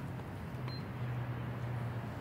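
Electronic push-up counter giving one short, high beep about a third of the way in as a push-up registers, over a low steady hum.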